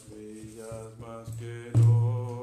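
A mridanga (khol) played under a sung devotional chant. The voice holds notes while a few light strokes fall on the small head, and near the end comes a deep, ringing bass stroke on the wide head.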